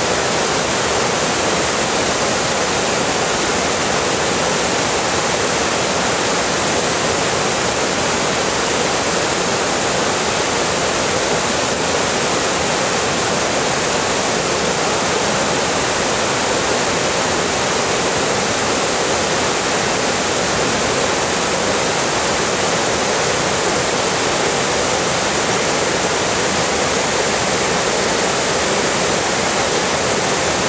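Loud, steady rush of whitewater rapids and small cascades pouring over boulders and rock ledges in a mountain river.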